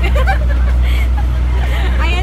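Passenger ferry's engine running with a steady low drone, with passengers' voices over it.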